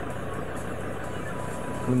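A steady rumbling background noise that starts abruptly and carries on evenly, with a man's voice beginning at the very end.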